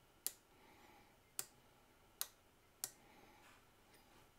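Four sharp, separate clicks, unevenly spaced, from a Mitutoyo 75–100 mm outside micrometer being closed on a steel bearing race; near silence between them.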